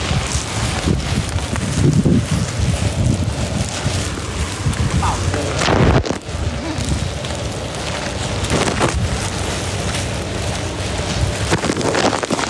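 Rain falling, with wind on the phone microphone making a dull noise that rises and falls unevenly.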